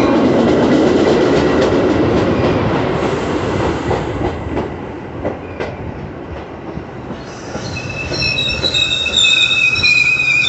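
Metra bilevel commuter cars rolling past as the train pulls into the station: a loud rumble of wheels on rail that eases off, with a few clacks over rail joints. From about three-quarters of the way in, a high, steady squeal from the wheels and brakes as the train slows to a stop.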